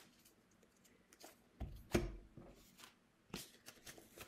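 Oracle cards being handled: a few soft taps and slides of the card deck, the loudest about two seconds in and a few more near the end.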